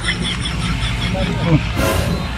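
Steady low rumble of a car on the move, heard from inside the cabin, with a few short bits of voice near the end.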